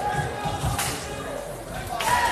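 Basketball being dribbled on a hardwood gym floor, with a sharp crack about a second in and brief sneaker squeaks, echoing in a large gym over crowd voices.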